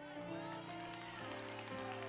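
Soft background music of sustained keyboard chords, the held notes shifting about every half second.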